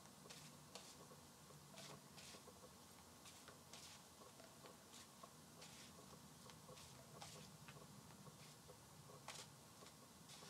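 Faint, irregular soft clicks and swishes of a deck of oracle cards being shuffled by hand, about two a second, over quiet room tone.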